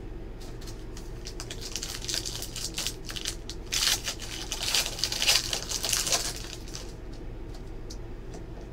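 Foil wrapper of a 2017 Panini Prizm football card pack being torn open and crinkled by hand. The crinkling starts about a second and a half in, is loudest in the middle, and stops about a second before the end.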